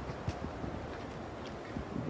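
Low wind rumble on the microphone, fairly faint, with a couple of soft knocks.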